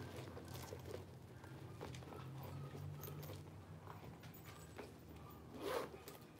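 Faint handling sounds of a patent leather handbag being turned over in the hands: soft rustles and light clicks of its hardware over a low steady hum, with one brief louder rustle near the end.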